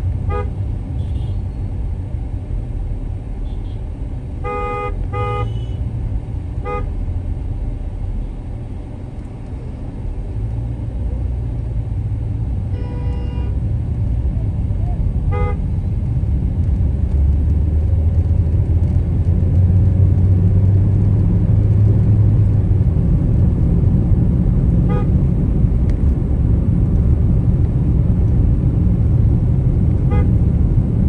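Car engine and road noise heard from inside the cabin while driving, a steady low rumble that grows louder after about ten seconds. Short vehicle horn toots sound over it several times, including a quick double toot about five seconds in and others near the middle and later on.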